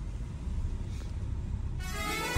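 Low steady rumble of a car heard from inside the cabin as it drives slowly forward. Music starts up near the end.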